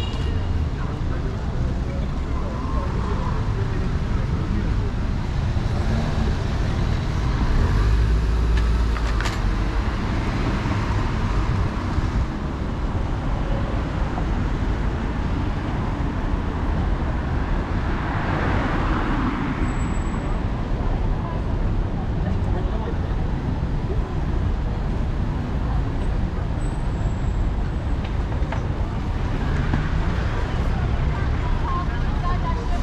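Steady road traffic from cars moving along a busy city street, a continuous low rumble with vehicles passing close by; one passing vehicle swells louder a little past halfway.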